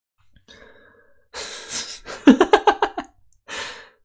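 A man breathes out heavily, then gives a short chuckle of several quick pulses, then breathes out again.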